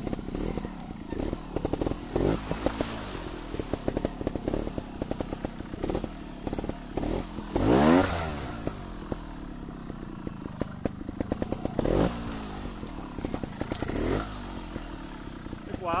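Scorpa trials motorcycle engine running at low revs under the rider, with short throttle blips. The loudest is a quick rev up and down about eight seconds in; smaller blips come about two, twelve and fourteen seconds in.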